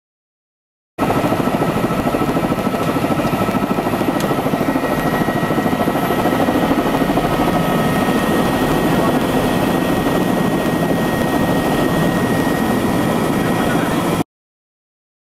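Tour helicopter's turbine engine and rotor heard from inside the cabin: a loud, steady, fast rotor beat with a thin high turbine whine over it, starting abruptly about a second in.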